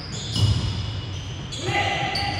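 A basketball bouncing on a hardwood gym floor, with high sneaker squeaks and a player's shout near the end, echoing in a large hall.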